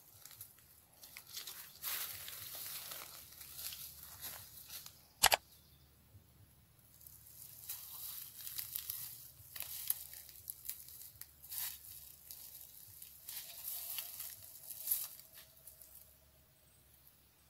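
Footsteps crunching and rustling through dry leaves and grass in irregular crackles, with one sharp click about five seconds in.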